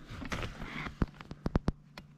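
Sharp clicks and light knocks from a small ice-fishing rod and spinning reel being picked up and handled, coming in a quick irregular run from about a second in.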